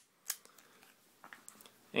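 A few faint handling clicks in a quiet room: one short click about a third of a second in and a small cluster of light ticks around a second and a half.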